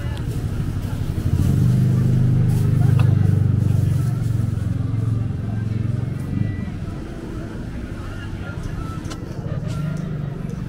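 Street ambience with the low hum of an engine running nearby. The hum swells about a second and a half in, holds for a few seconds and fades, and voices of people on the street can be heard throughout.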